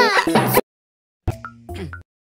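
Cartoon girl's giggle, electronically processed, cutting off abruptly about half a second in. After a short dead silence come a few faint electronic tones and a low steady hum.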